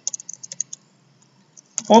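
Typing on a computer keyboard: a quick run of key clicks through the first second or so.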